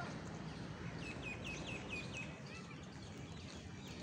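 A bird calling: a quick run of about six short, repeated high notes, about four a second, starting about a second in, over steady outdoor background noise.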